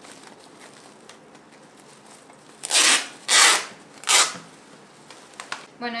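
Clear adhesive tape being pulled off its roll in three short rips in quick succession, about three seconds in.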